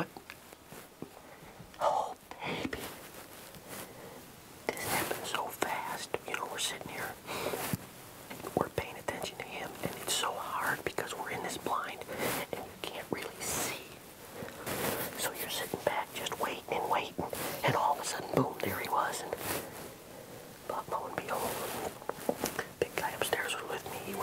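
A man whispering in a low, hushed voice, on and off.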